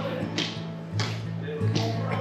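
Background music: an acoustic guitar strummed in a steady rhythm, a stroke roughly every two-thirds of a second.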